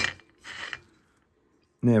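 A sharp click, then a short scrape about half a second later: a metal paint palette being handled and slid across a cutting mat.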